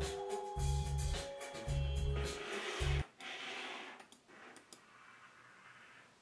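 Music with a deep bass note pulsing about once a second, which stops suddenly about halfway through; a few faint computer mouse clicks follow.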